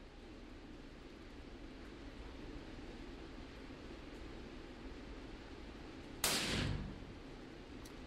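A single quiet shot from a bolt-action .300 Blackout rifle with a large suppressor, about six seconds in: a short report that fades within about half a second. It comes from a subsonic round, heavily suppressed, with no loud crack.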